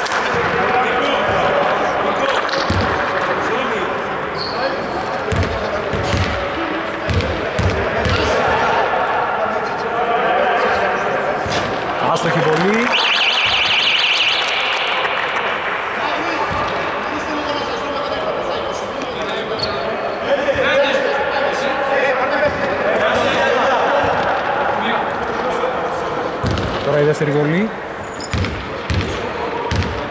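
Echoing gym-hall ambience: many overlapping player and spectator voices and a basketball bouncing on the hardwood court in short knocks. About halfway through, a shrill signal sounds for about a second and a half.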